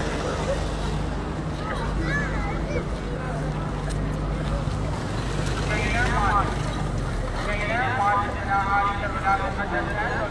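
Crowd murmur in an open plaza, with several nearby voices talking, clearest in the second half. A low steady hum runs underneath and drops away about eight seconds in.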